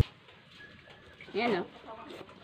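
A single short, low cooing call about one and a half seconds in, rising and then falling in pitch, against an otherwise quiet room.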